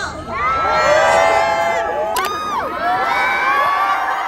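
Large festival crowd screaming and cheering, many high voices overlapping at once. About two seconds in, one voice slides up and back down above the rest.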